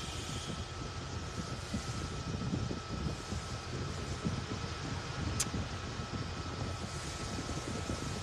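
Car air-conditioning blower running steadily in the cabin with the A/C on, a faint steady whine over it, and a single sharp click about five and a half seconds in.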